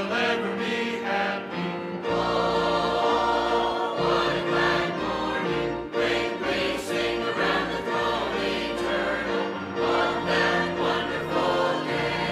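Mixed church choir of men's and women's voices singing, with a deep bass layer joining about two seconds in.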